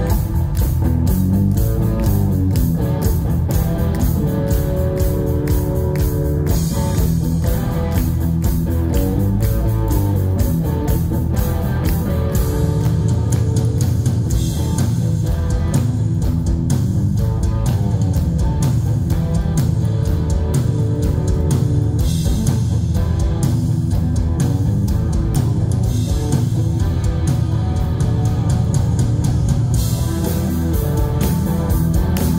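Live hard rock band playing loudly and steadily: a Flying V electric guitar through Marshall amplifiers, with drum kit and bass.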